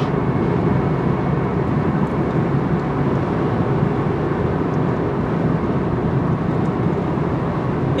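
Steady road and engine noise of a car at highway speed, heard from inside the cabin: an even, low rumble with no distinct events.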